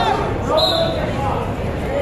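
Spectators' voices and shouts echoing in a gymnasium during a wrestling bout, with a brief high-pitched tone a little over half a second in.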